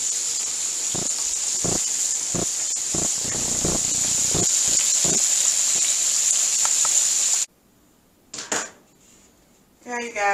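Pork chops frying in a pan of hot oil: a steady sizzling hiss with occasional short pops. It cuts off suddenly about seven and a half seconds in, leaving a quiet room with a couple of brief knocks.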